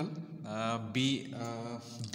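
A man speaking slowly, drawing out his syllables at an even, held pitch, so that his words sound almost chanted.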